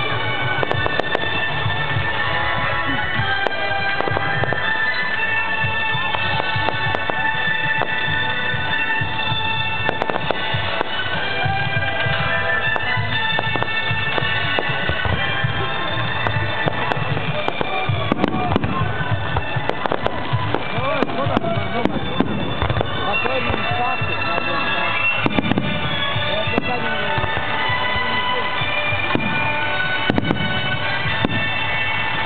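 Fireworks going off in a display, with frequent sharp bangs and crackles that come thicker from about halfway through, over music with long held notes.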